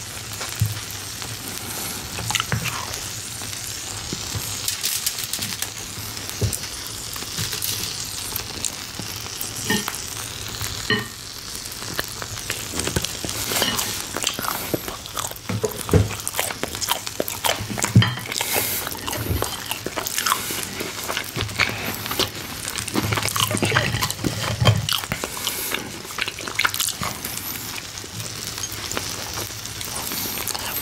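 Steak sizzling steadily on a hot stone grill plate, heard close up as a continuous hiss. Scattered clicks, crackles and a few deeper knocks come from handling and eating close to the microphone.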